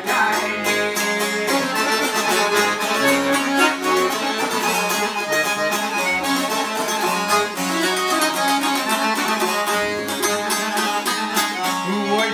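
Instrumental passage of an Albanian folk tune: two long-necked lutes, a çifteli and a larger bouzouki-type lute, picked in rapid notes over a Hohner piano accordion holding the melody and chords. The playing runs unbroken at a brisk pace.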